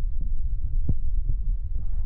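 Low rumble and thumping of a handheld phone's microphone being jostled while the person filming walks, with a sharper knock about a second in.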